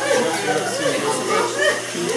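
Indistinct speech: voices talking, with no other sound standing out.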